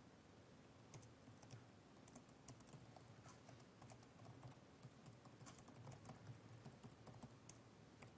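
Faint typing on a computer keyboard: an irregular run of soft key clicks as a line of text is typed.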